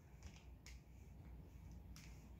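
Near silence, with two faint clicks, one about two-thirds of a second in and one near the end, as fingers press and trace on a plastic bag of cornstarch slime.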